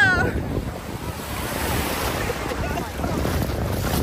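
Small sea waves washing onto a sandy shore, with wind buffeting the microphone as a steady low rumble.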